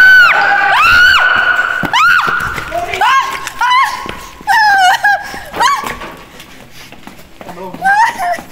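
A person screaming in fright: a run of about seven high-pitched shrieks, each rising and falling in pitch, loudest at the start and trailing off.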